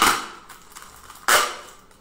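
Wide adhesive tape ripping as it is pulled off the roll: a loud tearing burst that fades at the start, then a second, shorter one a little past halfway.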